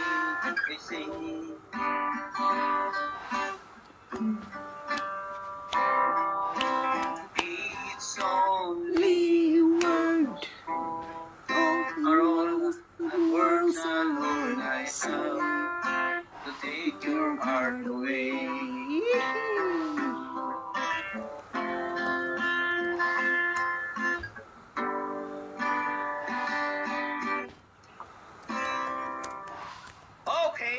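Acoustic guitar strummed in chords, with a man singing long, sliding held notes between them, heard through a computer's speakers over a livestream. The playing pauses briefly near the end.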